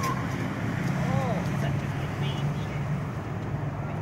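A steady low hum, like a motor or traffic, with one short rising-and-falling high-pitched vocal call about a second in.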